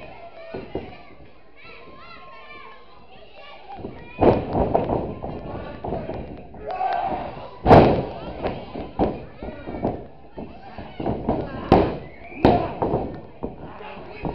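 Heavy thuds of a pro wrestling bout in the ring, fairly quiet for the first few seconds and then about five loud impacts from the middle on, with voices shouting around them.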